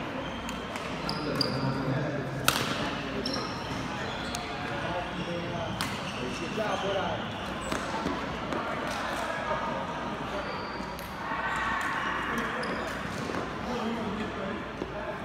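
Badminton rally: sharp cracks of rackets striking the shuttlecock, the loudest about two and a half seconds in, with short high squeaks of shoes on the court floor, over voices chattering in a large hall.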